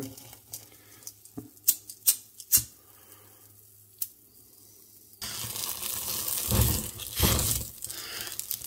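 A lighter clicks a few times while being held to dry leaves and herbs in a steel frying pan. About five seconds in, the leaves catch fire and burn loudly with crackling.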